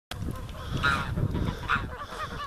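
A flock of grey and white domestic geese honking over a low rumble, with the loudest honks about a second in and again near the end.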